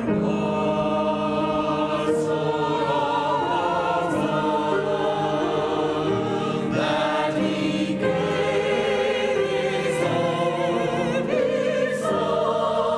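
Mixed church choir of men's and women's voices singing a slow piece, with long held notes and vibrato.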